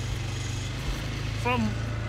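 All-terrain vehicle (quad bike) engine running at low speed, a steady low drone with a fine, even pulse.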